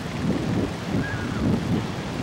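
Wind buffeting the microphone of a slingshot ride's on-board camera as the capsule swings: a steady low rush of noise.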